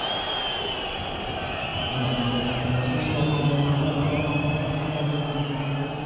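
Football stadium crowd noise with many high, shrill whistles overlapping, joined about two seconds in by a sustained, steady crowd chant.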